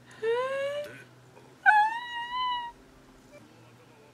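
A voice making two short high-pitched cries: the first rises in pitch, the second is higher and longer and wavers.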